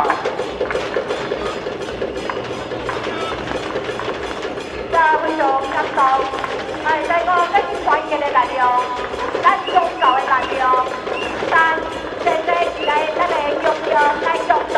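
Temple procession din: music with a steady, evenly spaced clacking beat and a held tone underneath. From about five seconds in, short pitched calls break in repeatedly over it.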